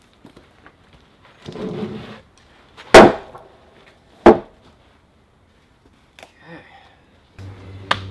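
Heavy rough-sawn timbers being shifted on a wooden stack: a short scrape, then two loud wooden knocks about a second apart.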